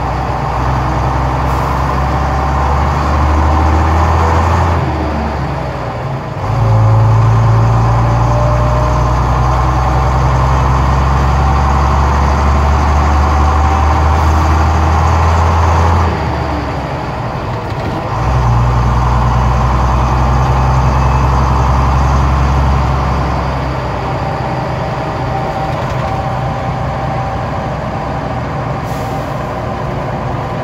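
Gardner 6LXB six-cylinder diesel of a Bristol VRT double-decker bus, heard from inside the bus, pulling loudly at steady revs. The note drops away twice, about five seconds in and again around sixteen seconds, as the bus changes gear, and the engine eases off and runs lighter over the last few seconds.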